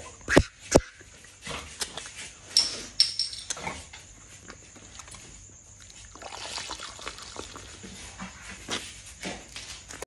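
A man chugging a bottle of beer: the beer glugging and sloshing out of the upended glass bottle as he gulps it down. Two sharp knocks come in the first second, and the liquid noise thickens over the last few seconds.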